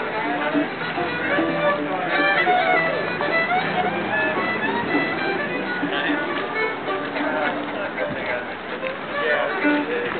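Acoustic fiddle and mandolin duet playing a folk-swing tune, the fiddle bowing the melody over the mandolin's accompaniment.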